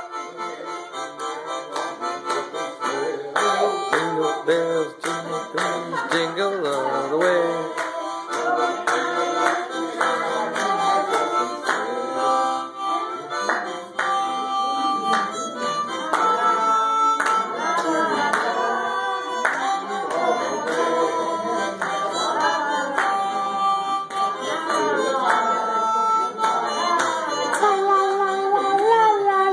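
Harmonica played solo: a continuous tune of held notes with chords beneath.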